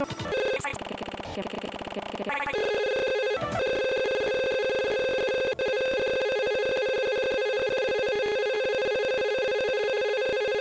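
A steady electronic trilling tone, like a ringing telephone, takes over about two and a half seconds in after a busier, shifting passage, and holds unchanged to the end.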